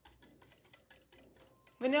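Wire whisk clicking and scraping against the sides of a glass measuring cup while beating a liquid custard of eggs, half-and-half, sugar and cinnamon: a quick, irregular run of light clicks. A woman's voice comes in near the end.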